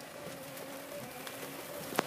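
Heavy rain on a car's roof and windshield, heard from inside the cabin as a steady hiss, with faint sustained tones underneath.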